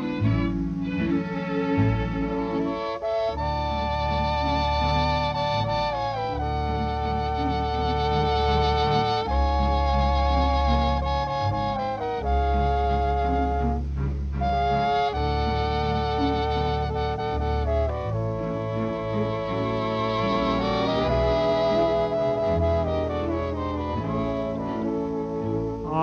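Instrumental break of a 1940 dance-orchestra recording: the orchestra plays the tune without the singer, a melody line in long wavering held notes over a steady bass.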